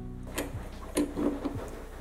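Quiet background music with about three short, sharp knocks roughly half a second apart, the middle one the loudest.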